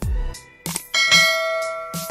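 Background music with a deep, pitch-dropping kick-drum beat. About halfway through, a bright bell chime rings for nearly a second: the notification-bell sound effect of a subscribe-button animation.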